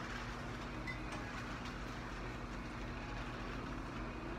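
Steady supermarket background noise: a low, constant hum with a hiss over it and a few faint scattered clicks.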